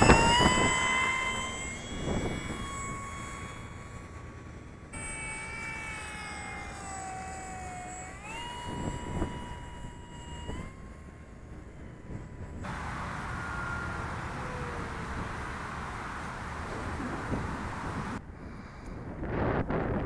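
Electric motor and propeller of a Dynam F4U Corsair RC model plane whining at high throttle during takeoff and climb-out, the pitch stepping up with throttle and gliding down as it flies away. Later a stretch of steady hiss with the motor faint and falling in pitch.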